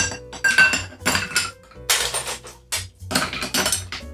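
Ice being scooped from a stainless steel ice bucket and dropped into a highball glass. The scoop clinks and scrapes against the metal and the glass several times in quick succession.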